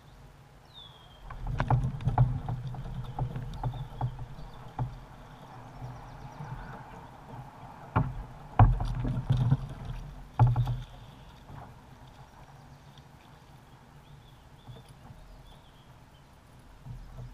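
Low thumps and sharp knocks on a plastic fishing kayak while an angler fights and lands a hooked smallmouth bass. There is a string of knocks a couple of seconds in, and the loudest bumps come about eight to eleven seconds in.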